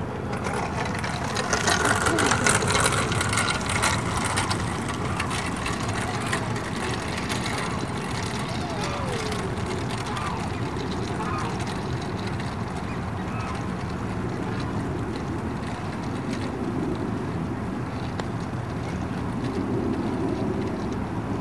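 Steady outdoor background noise, a little louder a couple of seconds in, with faint distant voices.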